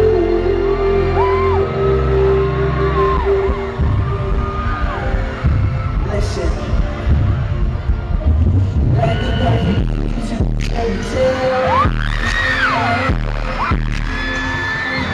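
Live R&B concert music played loud over a venue sound system. Sustained bass and synth notes give way to a heavy pounding beat about four seconds in, with high voices rising and falling over it in the second half.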